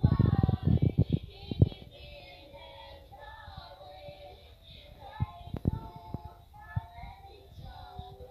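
Children singing a Ukrainian Christmas carol (koliadka), the melody running through the whole stretch. In the first second and a half, a quick run of loud thumps or knocks sounds over the singing, with a few single knocks later on.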